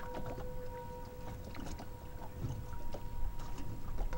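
Motorboat running across choppy water: an uneven low engine rumble with water splashing against the hull, and wind buffeting the microphone.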